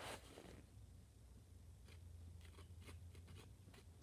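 Near silence with faint, short scrapes of a wooden popsicle stick spreading thick fabric paint across cardboard, over a low steady hum.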